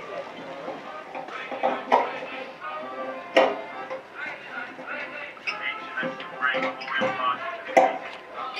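Music playing with voices murmuring under it, from an exhibit soundscape speaker, broken by three sharp knocks.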